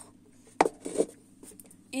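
A red plastic funnel being handled and set down on a workbench: a sharp click a little over half a second in, then a softer knock with a brief rub about a second in.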